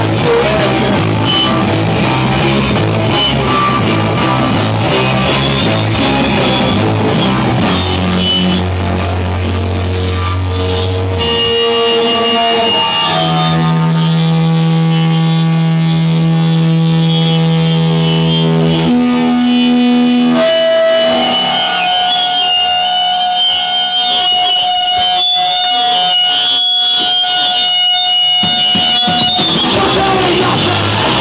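Live rock band playing loudly on electric guitars and drum kit. About eleven seconds in the drumming drops away and the guitars hold long, droning notes, with a high sustained tone through the last part.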